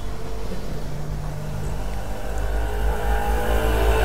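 Steady low mechanical rumble with a hum, growing louder over the second half.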